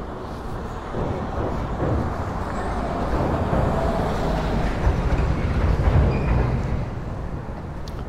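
Street traffic rumble building up from about a second in, loudest a little past the middle and easing off near the end, like a vehicle passing on the road alongside.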